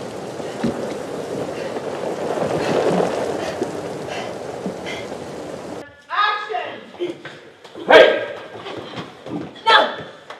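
Heavy rain pouring down as a steady hiss, cutting off suddenly about six seconds in. It is followed by loud voices shouting and crying out.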